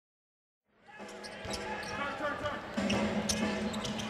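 Silent at first, then televised basketball game sound fades in under a second in: a ball dribbling on the hardwood court, with crowd noise and indistinct voices in the arena.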